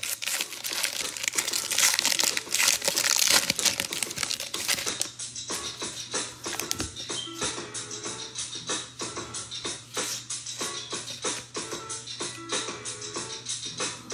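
Foil trading-card pack wrapper crinkling as it is torn open. Then a long run of short clicks as the cards from the pack are shuffled through, over quiet background music.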